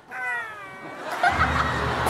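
A single meow, about a second long, falling in pitch and then levelling off. About a second in, audience laughter and music with a low bass line come in.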